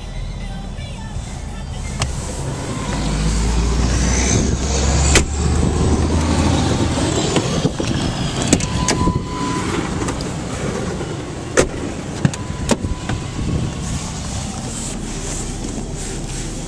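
Handling and movement noise around a pickup's cab, with a low rumble for a few seconds and a series of sharp clicks and knocks, like a door being worked and the cab being climbed into. A short steady beep sounds about nine seconds in.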